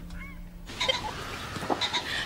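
Countryside outdoor ambience: a steady soft hiss with short, high bird chirps scattered through it. It sets in about two-thirds of a second in, as a low held note of the score dies away.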